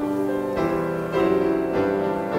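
Piano playing the introduction to a congregational hymn, sustained chords with new notes struck about every half second.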